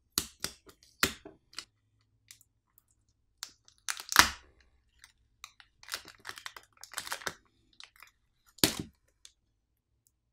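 Irregular clicks and crackles of plastic and film as a Samsung Galaxy S25+ battery is pulled out of the phone's frame by its pull pouch. The loudest crack comes about four seconds in, and another sharp one near nine seconds.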